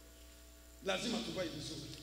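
A steady electrical hum through the sound system, with a man's voice over the microphone starting a little under a second in.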